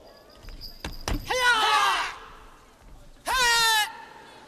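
Martial-arts yells from performers drilling kung fu moves: two drawn-out, wavering shouts about two seconds apart, with a thump from a stamp or landing just before the first.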